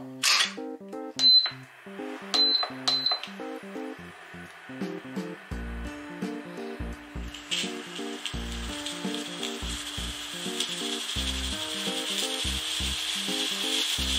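A few light metallic clinks with a short high ring in the first three seconds as the pressure weight is set on the cooker's valve. From about halfway through, a steady steam hiss from the Zero Katsuryoku Nabe pressure cooker grows slowly louder as the pot comes up to pressure.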